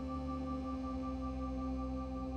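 Background music: a steady drone of several held tones, with no beat and no change in level.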